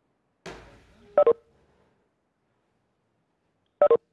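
A short thump, then a quick double electronic beep, heard twice about two and a half seconds apart.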